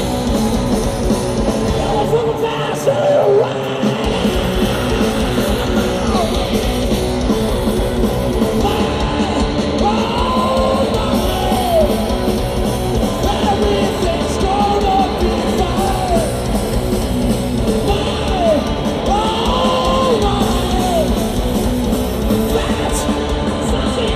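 Heavy rock band playing live: distorted electric guitars, bass and drums with yelled vocals. The bass and drums come in fully about four seconds in.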